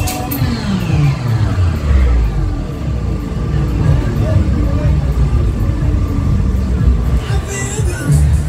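Loud techno music from a fairground thrill ride's sound system. The beat drops out just after the start with a falling pitch sweep over about two seconds. Low bass notes carry on, and the beat kicks back in near the end.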